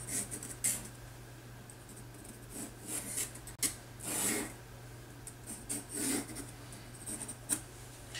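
Pencil sketching on rough watercolour paper (Saunders Waterford 300 gsm Rough): short, scratchy strokes come every second or so, light and intermittent. There is a single sharp click about three and a half seconds in.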